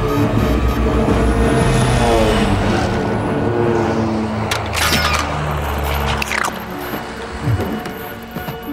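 Dramatic score music over cartoon sound effects: the engine whoosh of flying gunships passing by, and a sudden noisy burst about four and a half seconds in.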